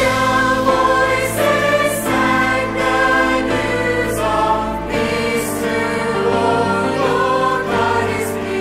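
Mixed choir of men and women singing a contemporary worship song in full, sustained chords that change about every second, with crisp 's' sounds standing out now and then.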